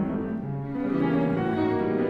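Classical piano trio music: a cello bowing long low notes over piano accompaniment.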